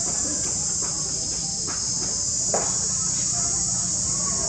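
A steady, high-pitched drone of insects, with a few faint short sounds over it, the clearest about two and a half seconds in.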